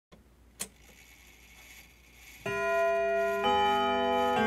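Start of an instrumental GarageBand track: faint at first with a single click about half a second in, then sustained synthesizer chords come in about two and a half seconds in and move to a new chord about a second later.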